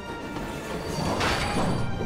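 Cartoon sound effect of railway knuckle couplers locking together, a noisy mechanical swell that peaks a little past the middle, over background music.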